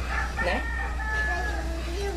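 A rooster crowing once, a long held call that drops slightly in pitch partway through.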